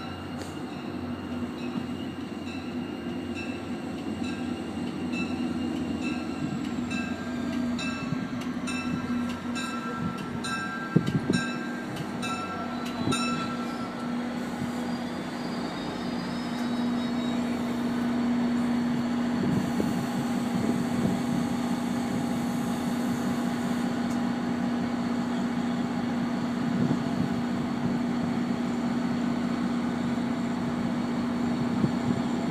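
An NJ Transit diesel-hauled commuter train approaches the station, its engine hum growing stronger as it nears. During the first half there is also a regular ticking, about twice a second.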